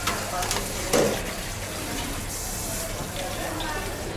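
Steady hiss of a busy food-stall counter, with a sharp knock at the start and another about a second in, and voices in the background.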